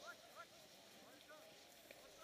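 Near silence, with a few faint, distant voices.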